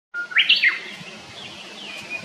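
A bird calling: one loud whistled call near the start that holds a note, jumps up in pitch and steps back down, then fainter short falling chirps near the end.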